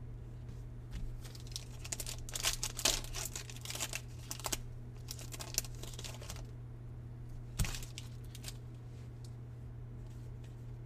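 Foil wrapper of a 2024 Donruss baseball card pack crinkling and tearing as it is opened by hand, busiest about two to four seconds in, with one sharp crackle near the end.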